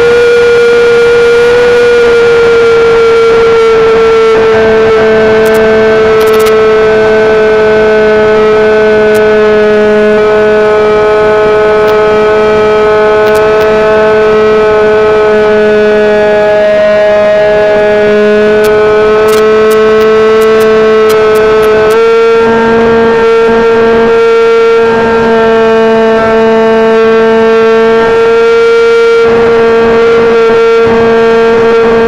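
Motor and propeller of a radio-controlled model airplane, heard loud and close from the onboard camera, droning at a steady pitch. The pitch sags slightly, then steps up about two-thirds of the way through as the throttle is opened.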